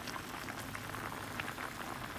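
Cauliflower roast gravy simmering in a pan, with a steady crackle of small bubbles popping.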